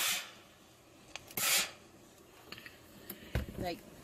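Steam iron hissing out short bursts of steam onto fabric: one at the start and a second, louder one about a second and a half in.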